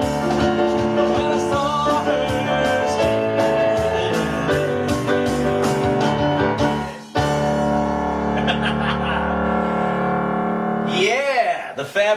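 Live piano played over a bass-and-drums backing track, ending a song: a steady beat for about seven seconds, then a final held chord that rings out for about four seconds. A man's voice laughs near the end.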